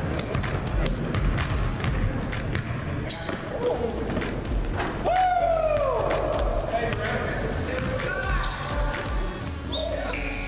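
Pickup basketball game on a hardwood gym floor: the ball bouncing, sneakers squeaking in many short, high chirps, and players' voices.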